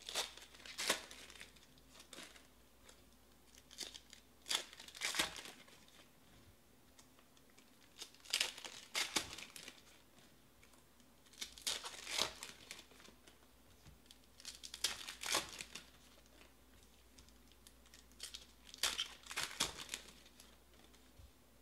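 2020 Donruss Optic Baseball card packs being torn open and crinkled by hand, in short bursts of crackling about every three to four seconds, with quiet between them.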